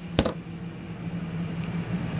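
A single knock as the padded lid of a leather recliner's armrest console is shut, followed by a steady low hum.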